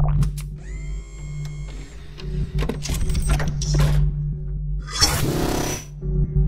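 Electronic logo-intro sound design: a steady low drone under a run of sharp mechanical clicks and short rising tones, ending in a loud whoosh in the last second.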